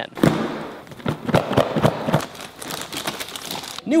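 Clear plastic bag crinkling and crackling as a new Wi-Fi router sealed inside it is handled, with irregular crackles throughout.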